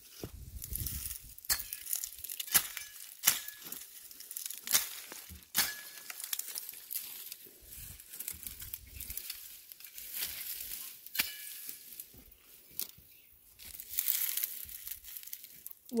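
Dry, dead asparagus ferns crackling and rustling as they are pulled up by hand, with irregular sharp snaps of brittle stems breaking.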